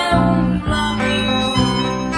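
Instrumental passage of a milonga played on plucked acoustic guitar, with bass notes moving about twice a second under a held melody line.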